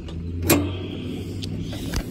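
Deck height-adjustment lever on a John Deere Sabre riding mower being worked by hand: a sharp metal clack about half a second in, then lighter clicks and scraping as the lever is moved.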